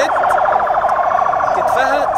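Emergency vehicle siren sounding a steady, rapidly pulsing warble, with people's voices faintly underneath.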